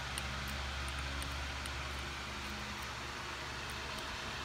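Electric fan running at high speed: a steady whooshing noise with a low hum beneath it and a few faint clicks.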